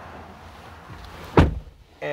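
Driver's door of a pickup truck being shut, one solid thump about one and a half seconds in; the outside background noise drops once the door is closed.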